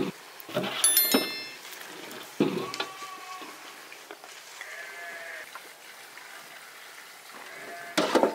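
Glass jars clinking and knocking a few times in the first couple of seconds, one clink ringing briefly, as sauce is poured through a plastic funnel into them. Sheep bleat twice more quietly, about three and five seconds in.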